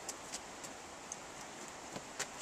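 Footfalls of people running on grass: a few faint, irregular soft ticks over a steady outdoor hiss.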